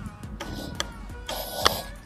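Background music, with a single sharp click or knock a little past the halfway mark.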